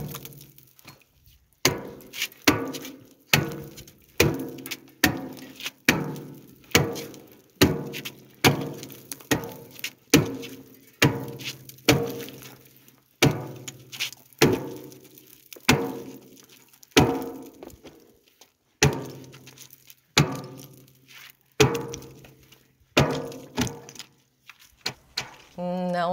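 An axe chopping at the ice on a frozen livestock water trough, one blow about every second in a steady run. Each blow is a sharp crack followed by a short ringing.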